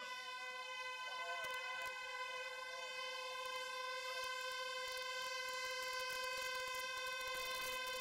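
Race starting horn sounding one long, steady note that cuts off suddenly near the end, with faint crowd voices beneath.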